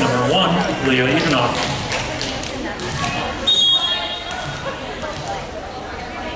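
Voices echoing in a gym hall, then a short single blast of a referee's whistle about three and a half seconds in, signalling the serve.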